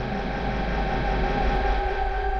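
Electronic drum and bass music: a sustained synthesizer drone of steady held tones over a low bass rumble, with no drums.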